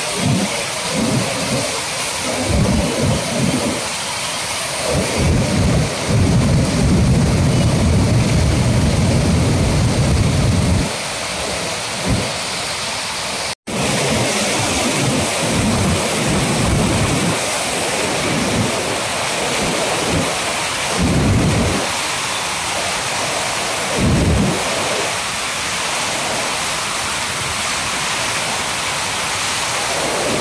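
Floodwater rushing and churning as it pours through the open gates of a river barrage: a steady, dense noise of turbulent water with a low rumble that keeps swelling and fading. There is a split-second gap about fourteen seconds in.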